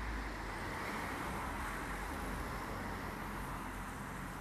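Steady hum of distant road traffic.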